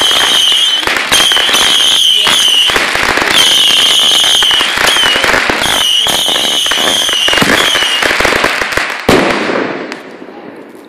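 A consumer firework cake firing shot after shot, with dense crackling and repeated high whistles each lasting up to about a second. A sharp loud bang comes about nine seconds in, and then the noise dies away.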